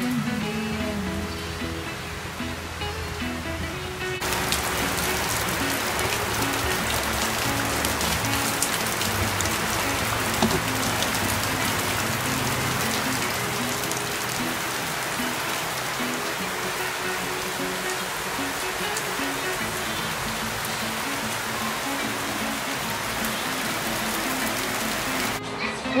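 Background music throughout. About four seconds in, steady rain comes in suddenly as a dense, even hiss over the music, and it stops just before the end.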